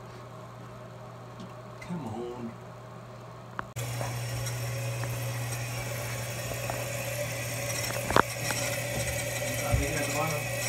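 Toilet tank fill valve refilling after a replacement: a steady rush of water into the tank starts abruptly about four seconds in and carries on, a powerful stream, with a click partway through. The new valve shows no leak.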